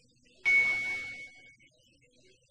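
A single bright chime-like hit from a motion-graphics transition sound effect: it strikes suddenly about half a second in with a short hiss, and its one high ringing tone fades out over about a second.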